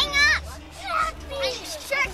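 Excited young children's voices: a high squeal right at the start, then scattered short exclamations and chatter.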